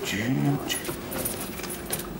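A man gives a short voiced grunt, then rummages through his suit jacket's inside pocket, making rustling and light clicking and jingling from small things in the pocket, as he searches for money.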